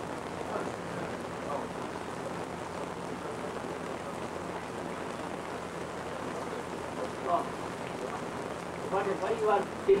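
A steady, even hiss, with faint voices here and there and a man's voice coming in near the end.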